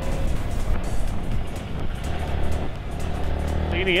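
Motorcycle running on the road, heard as a steady low noise, with background music over it.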